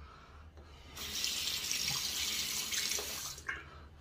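Bathroom sink tap running as a single-edge safety razor is rinsed under it. The water starts about a second in and is shut off shortly before the end.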